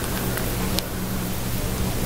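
Steady background hiss with a low electrical hum, and a single faint click a little under a second in.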